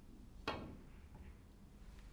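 A snooker cue's tip striking the cue ball: one sharp click about half a second in, with a short ringing tail.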